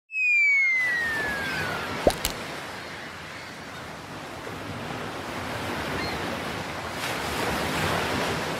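A whistle-like tone gliding steadily downward over the first two seconds, cut off by two quick clicks, then a steady wash of ocean surf that swells gradually toward the end.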